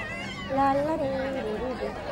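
Voices in a crowd, with one high-pitched voice drawn out and wavering from about half a second in.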